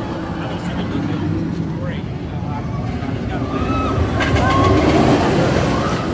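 Roller coaster train running on steel track over a wooden support structure, a steady rumble that swells louder about four seconds in as it passes close by.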